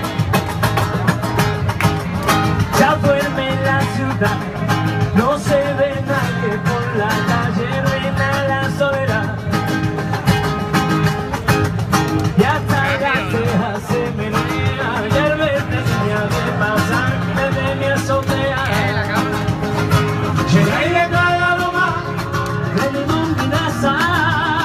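Live sevillanas played by a flamenco-style group: acoustic guitar strumming steadily, with a man's voice singing over it at times.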